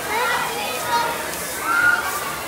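Many children's voices overlapping as they shout and squeal at play, with one louder squeal near the end. Beneath them is a steady hiss of shelled corn kernels shifting as children crawl and slide through a corn pit.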